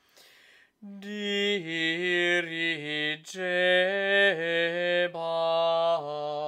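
Solo unaccompanied male voice singing Gregorian chant: a long melisma on one syllable that moves in small steps from held note to held note. A short breath comes just before the singing resumes, and there is another brief break about three seconds in.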